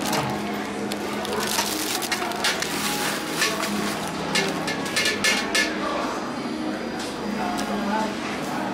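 Clear plastic seafood-boil bags crinkling and rustling as they are handled and opened, with voices in the background.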